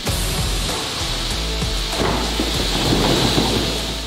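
Slurry water gushing out of a tipped, cored soapstone block, with a deep rumble as the cut stone columns slide and tumble out of it. The noise thickens from about two seconds in.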